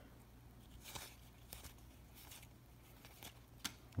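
Faint, brief slides and flicks of baseball trading cards being moved through a hand-held stack one at a time, a few soft card-on-card sounds scattered over a quiet room.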